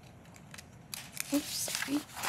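Faint rustling and handling noise at a microphone, starting about a second in, with two short murmured voice sounds in the second half.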